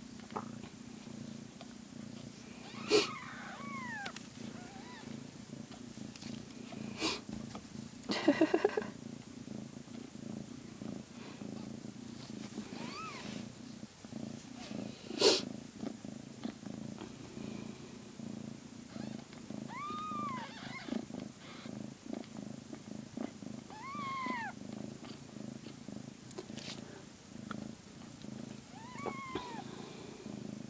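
Mother cat purring steadily while she nurses her newborn kittens. About five short, high calls that rise and fall are heard through it, mews typical of newborn kittens, along with a few sharp clicks.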